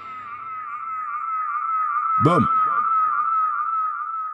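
Dub reggae studio effects as a track winds down: a high, wavering electronic tone held and slowly fading. About two seconds in, a downward-swooping zap repeats in fading echoes.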